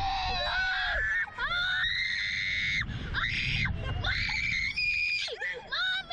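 Children screaming in fright on a reverse-bungee ride: a string of high-pitched screams, each held about half a second to a second, with short breaks between them.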